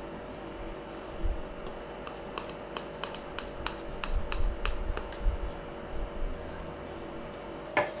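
A kitchen knife cutting soft steamed rava dhokla in a steel plate, the blade clicking lightly against the metal in a run of quick, irregular ticks through the middle stretch, with a few soft thuds.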